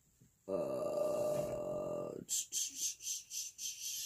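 A woman's voice humming on one steady pitch for under two seconds, then quick, even rattling at about five strokes a second.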